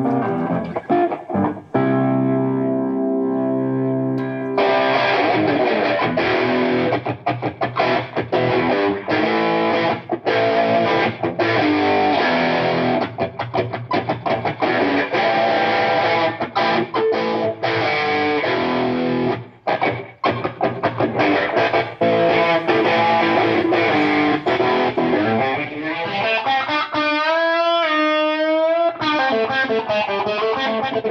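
Distorted electric guitar played over a Sennheiser EW-D digital wireless instrument link: a held chord a couple of seconds in, then fast riffing with a brief break past the middle, and a wavering bent note near the end.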